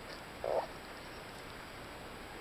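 Steady hiss of surf along a sandy beach. About half a second in, a single short, harsh call-like sound cuts in over it.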